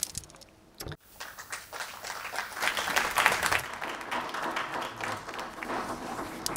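Audience applause, starting about a second in and swelling to its fullest near the middle.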